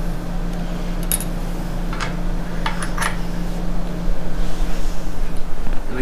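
Steady low machine hum from the running Agilent 6890 gas chromatograph and the lab's equipment, with a few light clicks and clinks of small hard objects being handled about one, two and three seconds in.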